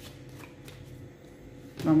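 A deck of tarot cards being shuffled by hand: a soft, quiet rustle of cards with a few light clicks.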